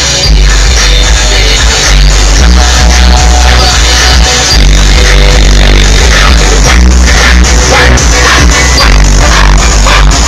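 Loud electronic music with heavy sub-bass played on a car audio system, heard inside the car's cabin. The bass is strong enough to shake the rear-view mirror.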